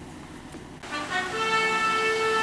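A steady pitched tone with many overtones begins about a second in and holds at one pitch.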